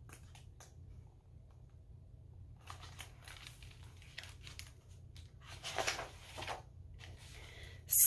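Paper rustling as a large hardcover picture book is handled, held up and brought back, in a few soft rustles with the loudest about six seconds in, over a faint low hum.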